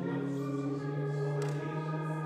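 A hymn: organ playing sustained chords with voices singing, the harmony shifting a couple of times.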